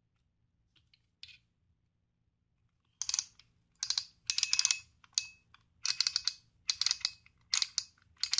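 The metal zoom head of a jump starter's built-in LED flashlight being twisted and slid to change the beam width. It makes a run of short scraping clicks, a little under two clusters a second, starting about three seconds in after one faint click.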